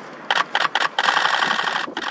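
Camera shutter firing in rapid-fire bursts: a few short bursts starting about a quarter second in, then one continuous burst of about a second.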